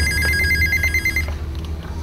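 Telephone ringing: a fast-pulsing two-note ring that stops a little over a second in, over a low steady hum.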